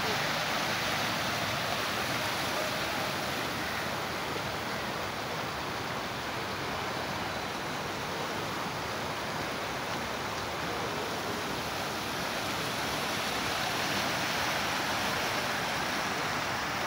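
Muddy floodwater from an overflowing storm drain rushing steadily across a flooded street after heavy rain, a continuous even rushing that holds its level throughout.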